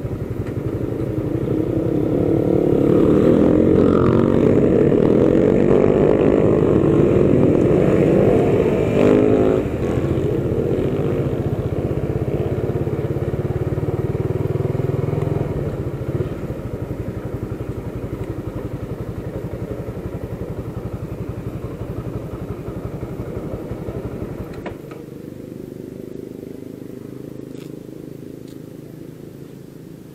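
Motorcycle engine running while riding, with road and wind noise. It is loudest for the first ten seconds, eases down in steps as the bike slows, and drops lower still a few seconds before the end as it comes to a stop.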